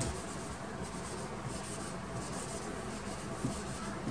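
A handheld whiteboard eraser wiped back and forth across a whiteboard, a faint swishing that repeats with each stroke.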